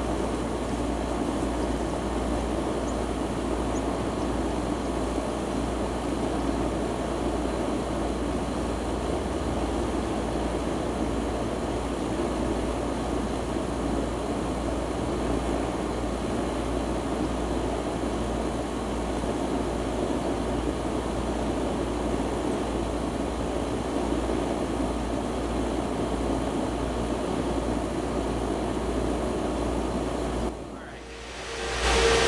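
Steady rumbling background noise that holds an even level throughout, with no distinct events.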